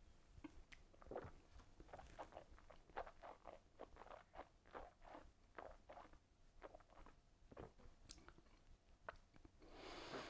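Faint mouth sounds of a person tasting a sip of brandy: a string of short, quiet smacks and clicks of lips and tongue, one or two a second.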